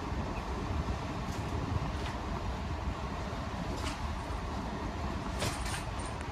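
GE PTAC wall air conditioner running steadily, with a few faint ticks over the even machine noise.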